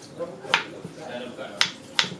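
Kitchen knife chopping a peeled potato into cubes on a wooden cutting board: sharp knocks of the blade striking the board, about one a second.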